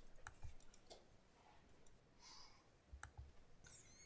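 Near silence, broken by a few faint, scattered clicks and a soft rustle.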